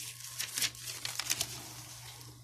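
Spiral-notebook paper pages rustling and crinkling as they are flipped by hand, a quick run of dry crackles in the first second and a half.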